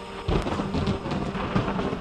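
Thunder-like rumble with crackling rain-like noise in a chillstep track's break. It comes in just after the sustained synth tones drop out near the start.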